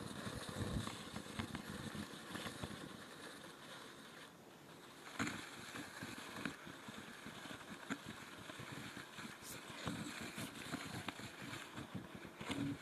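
Faint room noise with an irregular low rumble and scattered light knocks and rustles from a hand-held phone camera being moved. It drops almost to silence for about a second a little before the middle.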